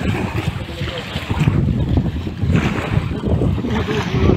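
Wind buffeting the microphone in an uneven rumble, with water washing at the shoreline underneath.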